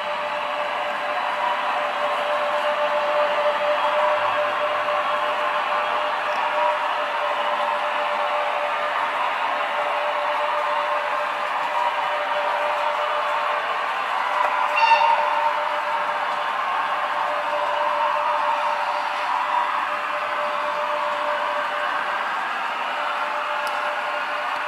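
HO-scale model train running on the layout: a steady rolling and motor noise with a constant thin whine, swelling briefly about fifteen seconds in.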